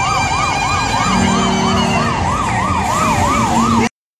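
Vehicle siren in a fast yelp, its pitch sweeping up and down about three times a second, with a steady lower tone joining about a second in. It cuts off abruptly just before the end.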